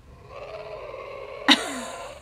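A throaty vocal sound: a held, breathy sound, then about one and a half seconds in a sudden cough-like burst that falls in pitch.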